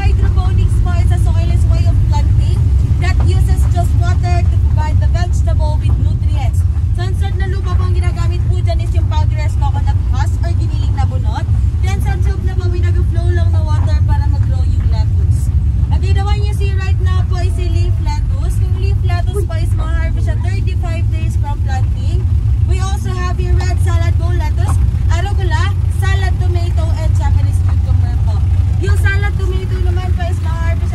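Steady low rumble of a moving open-sided tour vehicle carrying passengers, with people talking over it.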